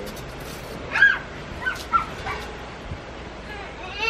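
Young children's high-pitched vocal sounds: one loud squeal about a second in, then a couple of shorter cries, over a few light clicks.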